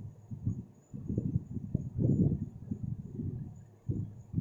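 Marker pen writing on a whiteboard. About a second in it starts a quick run of short, uneven strokes that goes on until near the end.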